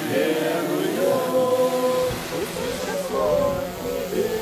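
A group of people singing a church hymn together, with long held notes.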